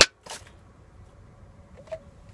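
AeroPress plunger pushed through the chamber, ejecting the spent coffee puck into a garbage can: a sharp pop at the start, a fainter knock just after, then a brief squeak near the end.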